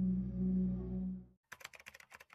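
A steady low electronic drone from the logo sting fades out about a second and a quarter in. It is followed by a quick run of keyboard-typing clicks, a typewriter sound effect for a title appearing letter by letter.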